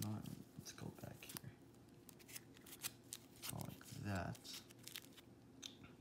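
Stack of baseball cards in plastic sleeves and rigid top-loader holders being flipped through by hand: faint plastic crinkling with irregular sharp clicks as the holders knock and slide against each other.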